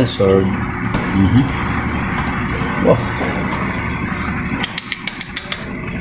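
A table tennis ball bouncing: a quick run of about seven light clicks in about a second, coming faster toward the end, as it bounces to rest, over steady hall noise and brief voices.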